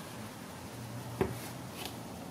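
Quiet handling of cloth exhaust heat wrap on a metal EGR valve tube, a soft rubbing over a low steady hum, with one light sharp click a little after a second in.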